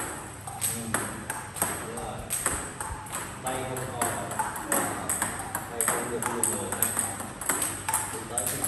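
Table tennis balls struck by paddles and bouncing on the table in a multiball drill, balls fed one after another from a basket, with sharp clicks about two or three times a second throughout.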